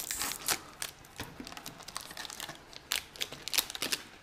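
Foil trading-card booster pack wrapper crinkling and tearing open in the hands: irregular sharp crackles and snaps, one louder about half a second in.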